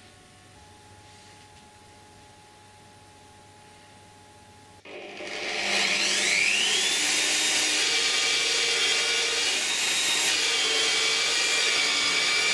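Quiet room tone for the first few seconds. Then a benchtop drill press starts about five seconds in, its whine rising as it spins up, and runs steadily while its bit bores into the wooden guitar body.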